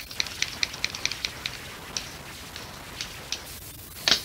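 Acrylic paint being stirred in a small plastic cup: a run of quick wet clicks, dense at first, then thinning out and stopping about three seconds in.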